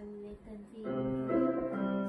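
Keyboard music played through a television's speaker: soft at first, then sustained chords come in louder about a second in.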